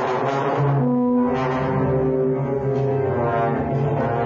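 Trombone playing long held low notes that change pitch every second or so, with a steadier low tone sounding beneath them.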